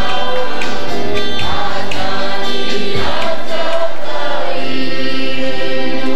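A choir singing a gospel worship song.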